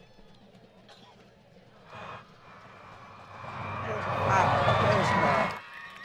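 Faint stadium background, then from about three seconds in a louder stretch of distant, echoing voices across the stadium that stops shortly before the end. It comes as the face-mask penalty is being called.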